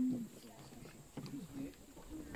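A woman's voice making a short hummed sound at the very start, then brief murmured, wordless vocal sounds about a second in.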